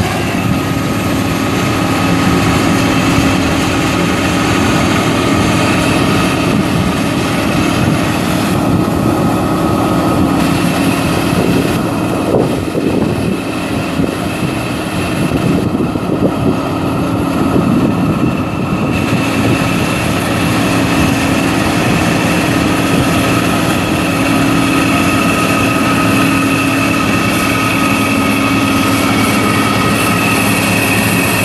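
John Deere 9560 STS combine's six-cylinder turbo diesel engine running steadily, with a steady whine above the engine note.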